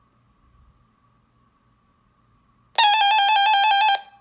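RadioShack NOAA weather alert radio sounding its alert tone when its button is pressed: a loud, buzzy, steady-pitched beep with a fast flutter, starting near the end and lasting about a second. A faint steady high tone is heard before it.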